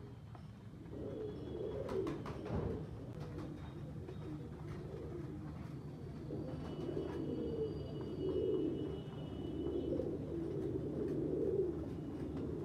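Fancy pigeons cooing: a run of low, rolling coos repeating about once a second, with a couple of sharp clicks about two seconds in.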